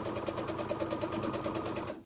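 Baby Lock Sofia 2 sewing machine running at a steady speed, stitching a long straight stitch through thick layers of wool blazer and knit sweater, with a fast, even ticking rhythm. It stops just before the end.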